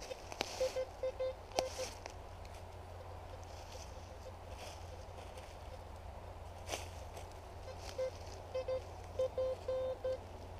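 Metal detector sounding short beeps as its coil is swept over a dug hole, a handful near the start and a quicker run near the end that ends in a longer tone, signalling buried metal in the hole. A few sharp clicks and some rustling of leaves come in between.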